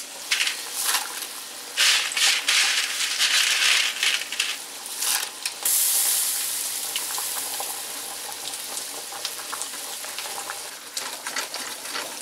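Dry fettuccine going into a pot of boiling water on the stove, with clattering and splashing for the first few seconds. Then a loud hiss of boiling and frying sets in suddenly and fades slowly. Near the end, a spatula scrapes turkey pieces in a sizzling skillet.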